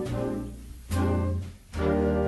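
Big band of trumpets, trombones, saxophones, archtop guitar, keyboard and drums playing a slow swing ballad. Held horn chords fade away briefly and are followed by a fresh chord with a cymbal about a second in, and again near the end.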